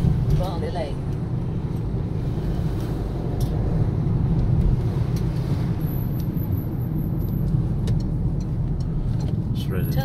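A car's engine and tyre noise heard inside the cabin while driving: a steady low rumble.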